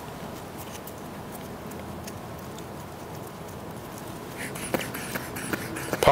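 Quiet room tone with faint rustling and light clicks from handling a blood pressure cuff on a patient's arm, with a little more rustle and a few sharper clicks near the end.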